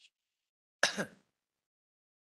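A person clearing their throat once, briefly, about a second in.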